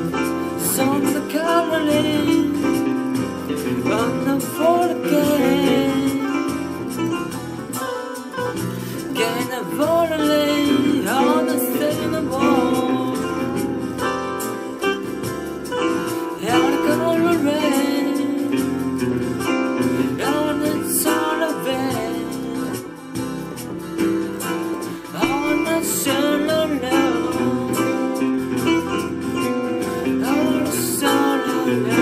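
A song: a sung melody over steady instrumental backing.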